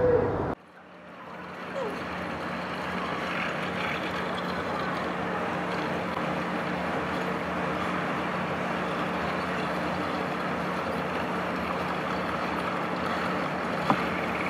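Steady fast-food restaurant background noise: a constant low hum under indistinct chatter, starting after a cut about half a second in.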